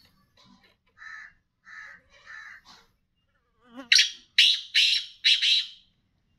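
Caged black francolin calling: a few soft notes, then, about four seconds in, a loud harsh call of four quick notes.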